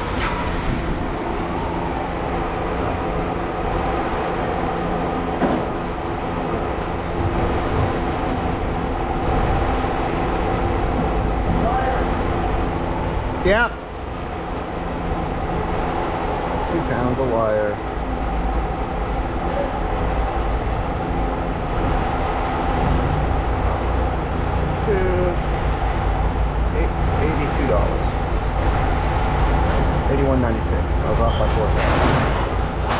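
A machine or engine runs steadily with a humming drone, and its low rumble grows heavier about two-thirds of the way through. A single quick rising squeal sounds near the middle, with faint voices talking in the background.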